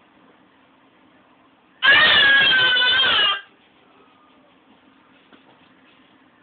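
A toddler's single long scream, held at a nearly steady high pitch for about a second and a half, starting about two seconds in.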